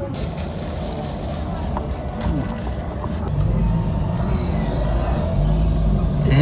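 Car on the move heard from inside the cabin: a steady low road and engine rumble under a wide hiss, growing louder about halfway through.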